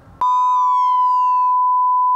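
A loud, steady electronic beep starting abruptly about a fifth of a second in, with a second tone sliding slowly downward beneath it, from the video's closing logo sting.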